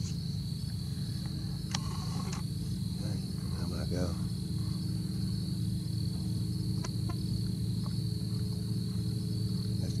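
Crickets trilling continuously in one steady high-pitched tone, over a louder, steady low hum. A few faint clicks come through.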